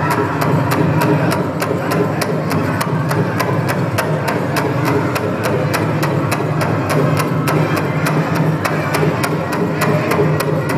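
Powwow drum struck in unison by several drummers, keeping a steady fast beat of about three strikes a second, over the reverberant din of the arena.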